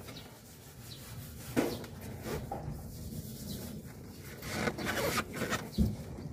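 Hands and a hand tool working on the metal fittings of a split air conditioner's outdoor unit: irregular rubbing and scraping with scattered small clicks, a sharper click about one and a half seconds in, and a low knock just before the end.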